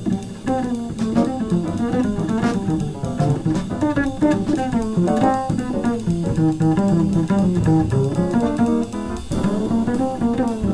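Jazz piano trio playing a fast bebop tune, with the upright double bass played pizzicato standing out in a busy stream of quick notes.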